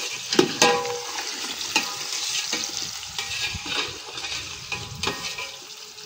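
Food sizzling and frying in hot oil in a metal pot over a wood fire. A metal ladle stirs it, scraping and clinking against the pot every so often.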